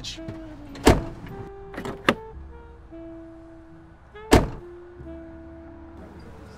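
Car door thumping shut, with a sharp knock about a second in and a louder one just past four seconds, over soft background music of long held notes.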